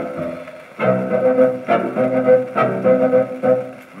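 Instrumental break of a 1943 Dutch popular song played from a 78 rpm record: the accompanying band plays a short run of sustained chords between sung verses. It dips briefly about half a second in and again near the end.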